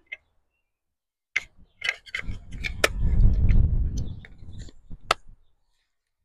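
A scatter of sharp clicks and ticks, with a low rumble that swells and fades in the middle.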